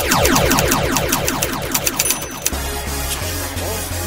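Electronic music: a rapid cascade of repeating falling tones for the first two and a half seconds, then a steady low bass.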